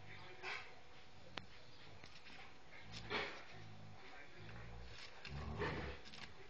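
Two dogs play-fighting: low growls at intervals and a few short rough bursts of growling, the loudest about three seconds in and again near the end. A single sharp click about a second and a half in.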